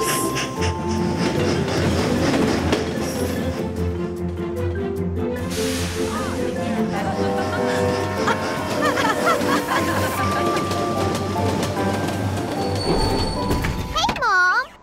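Cartoon background music over a train sound effect: a locomotive and its carriages running along the rails, with a brief rushing sweep about halfway through.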